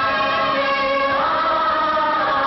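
Bengali film song: voices sing long, steady held notes, with the pitch moving up a step about a second in.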